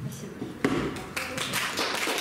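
Audience applauding at the end of a talk, the dense clapping building up about a second in, after a couple of sharp knocks near the start.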